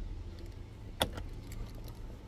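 Low steady rumble of a car's engine heard inside the cabin, with a single sharp click about a second in.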